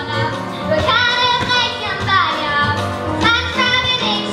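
Children singing a musical number over instrumental accompaniment with a steady bass line. The voices come in about a second in.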